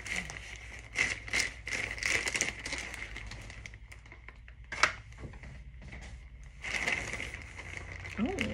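Plastic packaging rustling and crinkling in the hands, with scattered small clicks, busiest at first and again near the end; a single sharp click about five seconds in is the loudest sound.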